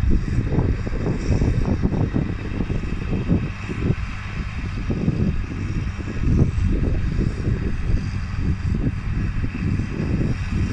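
John Deere 8300 tractor's six-cylinder diesel engine running under load at a distance as it pulls a four-furrow plough, a low drone mixed with gusty wind buffeting the microphone, the loudness rising and falling.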